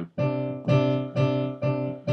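One keyboard key struck four times, about twice a second, each strike sounding two notes together, C3 and D4, because MIDI note 48 has been remapped to 62 while the original note still passes through.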